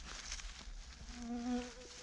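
A flying insect buzzes past for just under a second, a steady low drone and the loudest sound, over a light rustle of moss and pine needles being handled.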